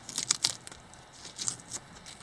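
Clear plastic tape being peeled off a cured fiberglass-and-resin patch and crumpled in the hand, crackling and tearing in short bursts: a cluster in the first half second and another about a second and a half in.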